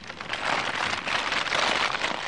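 Paper wrapping rustling and crinkling as a parcel is handled, growing louder in the second half.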